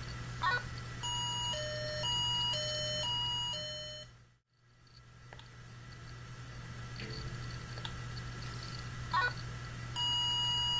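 Medtronic SynchroMed II intrathecal baclofen pump sounding its critical-alarm test tone: a two-tone alarm that alternates between a higher and a lower beep every half second, six tones over about three seconds. It comes after a short electronic chirp and sits over a steady low hum. A second short chirp comes near the end.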